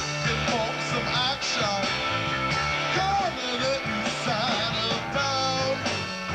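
Live funk band playing an instrumental stretch: a steady electric bass line and drums under electric guitar, with trumpets and saxophones in the horn section.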